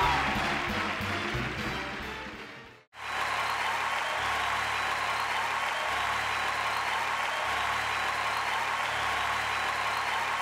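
Live band play-off music over audience applause, fading out over the first three seconds. After a brief silence, a steady sound of applause with a low bass line under it.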